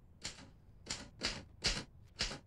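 Manual typewriter keys struck one at a time: four slow, unevenly spaced key strikes.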